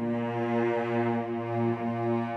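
A sampled cello section playing back a single low held note, its loudness gently rising and falling as it follows a modulation curve drawn in regular, machine-even waves.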